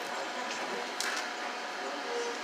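Nail dryer's fan running steadily, blowing warm air, with a short click about a second in.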